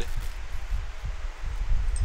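Steady background noise between spoken phrases: a hiss with a low rumble, and no distinct event.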